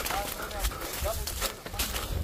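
Footsteps crunching on dry leaf litter, several short irregular crackles, with faint voices in the background.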